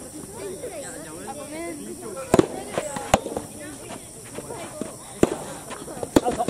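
Soft tennis rackets striking the rubber ball during a rally: three loud, sharp pops about two and a half, three and five seconds in, with fainter pops between them. Voices run underneath.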